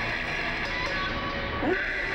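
Heavy metal band playing live, with distorted electric guitar filling the sound and a short swooping note near the end.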